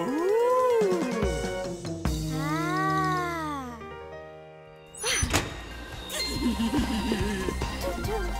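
Cartoon soundtrack of music and sound effects: two long wordless vocal glides that rise and fall in pitch, then a sharp click about five seconds in, followed by quicker, busier music.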